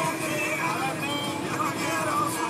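Suzuki Jimny being driven, with steady engine and road noise under music with a singing voice.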